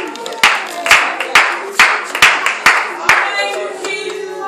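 Congregation clapping hands together in time, a steady beat of about two claps a second with seven sharp claps.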